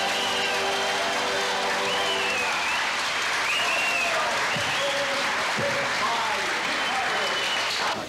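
A roomful of dinner guests applauding, with voices calling out over the clapping. Music is still playing at first and fades out in the first two or three seconds.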